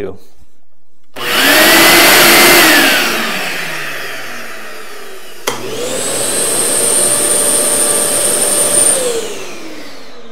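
A conventional shop vacuum is switched on and runs loudly for about a second and a half, its pitch rising as it spins up, then winds down. After a click, a Bosch VAC090S 9-gallon dust extractor starts and runs noticeably quieter with a steady high whine, then spins down near the end.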